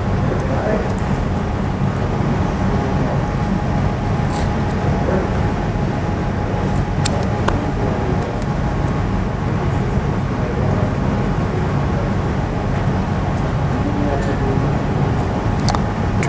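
Steady low hum and hiss of room tone, with a few faint clicks.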